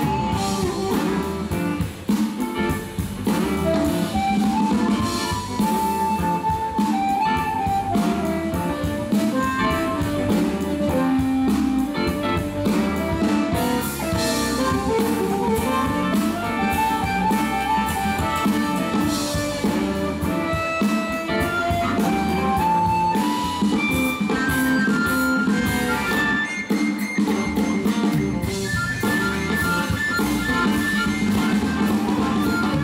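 Live electric blues: a harmonica played through a microphone cupped in the hands carries the lead lines over a band with bass guitar, guitar and drum kit.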